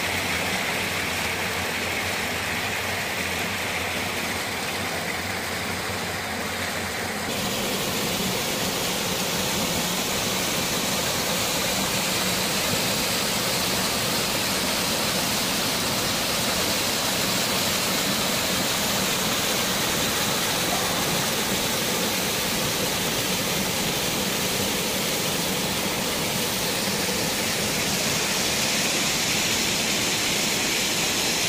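Shallow stream water rushing over flat rock slabs and small rocky cascades, a steady splashing rush. About seven seconds in it changes abruptly to a slightly louder, hissier rush.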